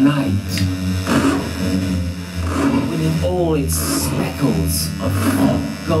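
Live experimental improvised music: a steady electric hum and low sustained tones, with a warbling, voice-like sweep about three seconds in.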